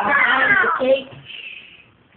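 A loud, high-pitched, wavering vocal cry or squeal lasting about a second, followed by a fainter short high sound.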